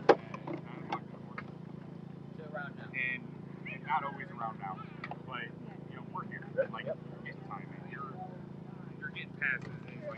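Faint voices of people talking in the background over a steady low hum, with a couple of sharp clicks near the start.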